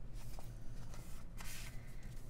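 Paper sticker sheets rustling and sliding against each other as they are handled, in two short spells.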